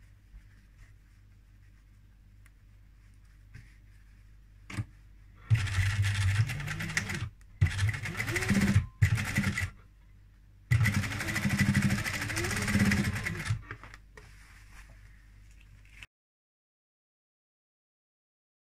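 Electric sewing machine stitching down the pleats of a cloth face mask in several short runs, starting and stopping as the fabric is guided under the needle, its motor speeding up and slowing within the runs. Before the first run there are a few seconds of quiet fabric handling and a single click.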